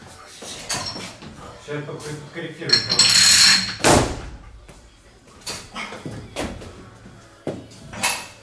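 A barbell lift: for about a second the plates and bar clatter with a metallic ring, ending in a heavy thud of feet and bar on the platform as the snatch is caught overhead.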